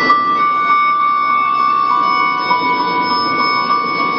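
Live band music through a stage PA system, a melody instrument holding long, steady high notes over the accompaniment, with a step down in pitch about halfway through.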